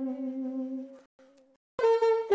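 Alto saxophone played solo: a long soft held note fades out about a second in, then a brief quieter note and a short gap. A new, louder phrase starts near the end.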